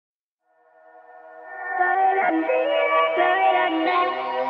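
Electronic dance song in a sped-up nightcore edit, fading in from silence over the first two seconds, with a high vocal line entering just after two seconds in.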